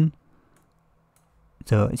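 A man's speech stops just after the start and resumes near the end. Between them is a near-silent pause holding a few faint clicks from marking up an on-screen slide.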